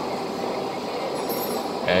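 Steady background hum with no distinct events, the continuous noise of the surroundings; a man's voice comes in at the very end.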